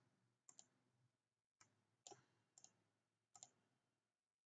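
Near silence broken by a handful of faint computer mouse clicks, mostly in quick pairs like double-clicks.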